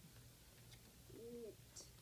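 Near silence, broken about a second in by a child's brief, soft, hum-like voiced sound, made while he works out the next word in his reading.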